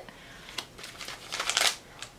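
Paper tea sachet packaging crinkling as it is handled, a run of short crackles starting about half a second in and growing louder before stopping just before the end.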